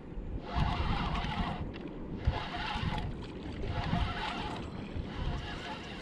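Spinning reel being cranked in spurts while a small hooked fish is reeled in: a whirring that comes and goes about four times. Light water and wind noise lie underneath.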